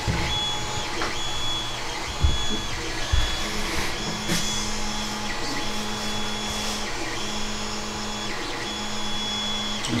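A desktop 3D printer running, its motors whirring with a whine that starts and stops in stretches of about a second. There are two low thumps about two and three seconds in.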